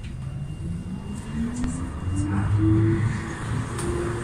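Tram's electric traction motors whining and rising in pitch as the tram accelerates, then holding a steady note, over the rumble of the car running on the rails.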